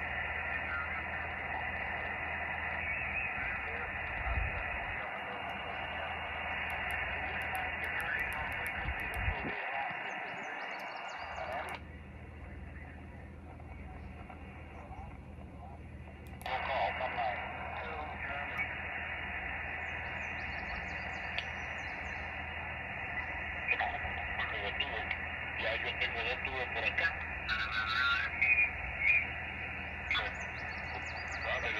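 Xiegu X6100 HF transceiver's speaker playing 20-metre single-sideband reception: band hiss cut off above about 3 kHz, with a weak, distant voice coming through now and then. The hiss drops away for about four seconds midway, then returns.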